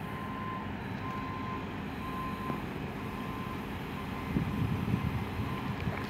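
EMD GP38-2 diesel-electric locomotive's 16-cylinder two-stroke engine running at low power as it pulls tank cars slowly ahead, a steady low rumble that grows somewhat louder about four seconds in as it draws closer.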